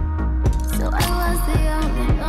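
Background music with a steady beat, about two beats a second, over a heavy bass line.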